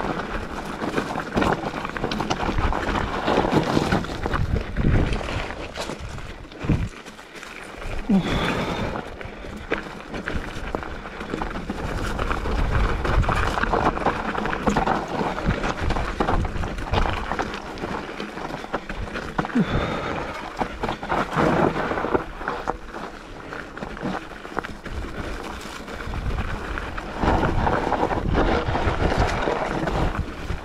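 Mountain bike riding down a loose, rocky trail: tyres rolling over stones and gravel, with frequent clicks and rattles from the bike over the bumps, and wind on the microphone.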